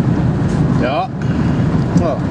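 Steady road and engine noise inside the cabin of a moving Pontiac Sunfire, with a short, gliding voice-like sound about a second in.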